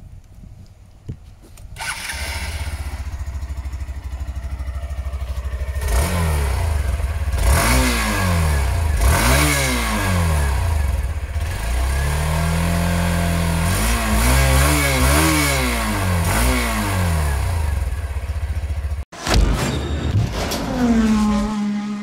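Hero Xtreme 160R's fuel-injected 163 cc air-cooled single-cylinder engine starting about two seconds in and idling, then revved in a run of short throttle blips, one longer held rev and more blips before dropping back to idle. The engine sound cuts off suddenly near the end.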